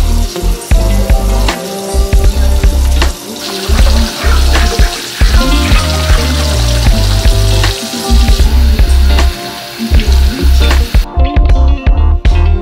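Background music with a heavy bass beat over tap water running into a kitchen sink while drinking glasses are washed; the water hiss stops about a second before the end.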